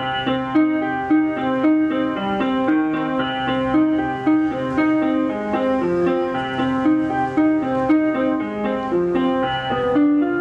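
Live instrumental music on accordion and keyboard: a steady run of short, quickly changing notes over a held low note.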